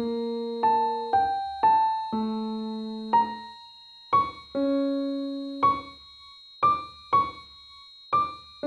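Slow, gentle piano-like keyboard music: single notes and soft two-note chords struck about once or twice a second, each ringing and fading away. A faint, steady high-pitched tone runs underneath.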